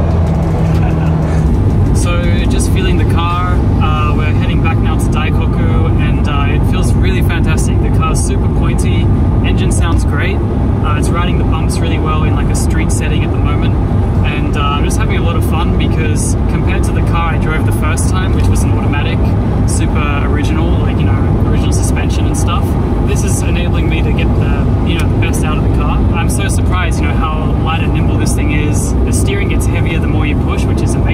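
Cabin noise of a Honda NSX NA1 cruising on the expressway: the V6 engine and tyre and road noise run at a steady level, with voices talking over them.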